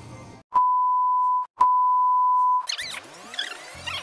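Two steady edit beeps, each about a second long, back to back with a click at the start of each, of the kind laid over speech to bleep it out. A short sound effect with sweeping, gliding pitches follows near the end.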